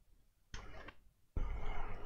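Handling noise from hands working on the laptop's open underside: two short rubbing, scraping bursts with sudden starts, the second one longer and louder.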